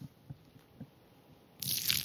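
Near silence with a couple of faint ticks, then near the end a brief hissing noise as champagne is poured from a glass into a man's upturned backside.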